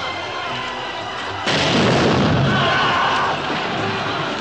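Film score music, cut across about one and a half seconds in by a sudden loud battle blast that carries on for nearly two seconds before fading back under the music.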